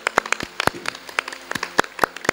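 A congregation clapping their hands, with sharp, separate claps coming several times a second at an uneven pace.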